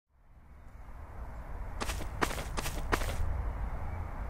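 A low rumbling ambience fades in out of silence. About two seconds in come four short, crisp rustling crunches in quick succession.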